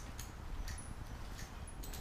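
Faint, scattered small clicks and handling noise as bolts are threaded in by hand on a motorcycle engine guard bracket.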